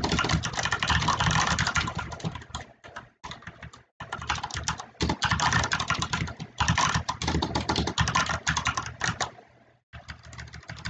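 Rapid typing on a computer keyboard: quick runs of key clicks in bursts, with a short pause about three to four seconds in and a stop just before the end.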